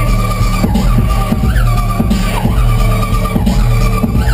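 Dubstep DJ set played loud over a club sound system: a heavy pulsing bass with a high, screeching lead that holds one pitch and bends up briefly every second or so.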